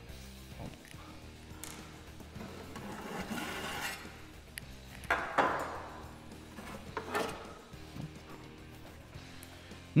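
Soft background music under a few knocks and scrapes of sheet-metal parts being handled as a gas boiler's combustion chamber is opened up, the loudest knocks about five and seven seconds in.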